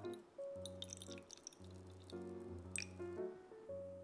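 Milk-and-cream panna cotta mixture pouring down a wooden spoon into a glass cup, with small drips and splashes in the first second and again near three seconds, over background music.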